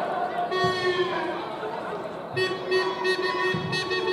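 Football supporters in the stands chanting in long, held notes, with a few low drum beats among them.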